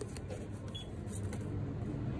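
Steady low background hum, with a few faint paper rustles as a folded banknote is pushed down through the slot of a plastic charity donation box, near the start and again about a second in.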